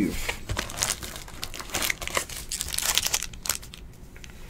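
Panini Elite Draft Picks trading-card pack wrappers crinkling as the packs are pulled out of the opened box and handled: an irregular run of crinkles and crackles that thins out near the end.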